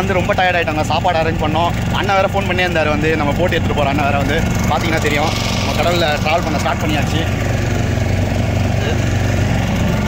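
A boat's motor running steadily with an even low drone, with men's voices talking over it.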